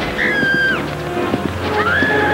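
Music playing under a woman's high-pitched screams: a short falling shriek early on, then a long held scream starting near the end.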